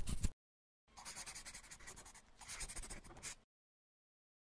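Pencil-on-paper sound effect. Quick rubbing strokes of an eraser stop a moment in. After a short pause come about two and a half seconds of softer pencil writing strokes with a brief break in the middle.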